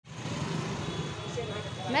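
Steady street background noise with a traffic hum, and a woman's voice starting to speak near the end.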